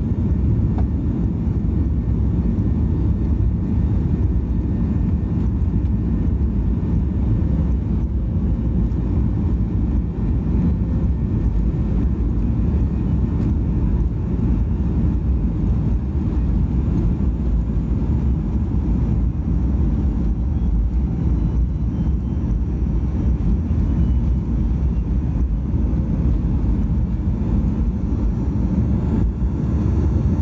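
Boeing 737-800's CFM56-7B turbofan engines at takeoff thrust, heard from inside the cabin during the takeoff roll: a loud, deep, steady roar.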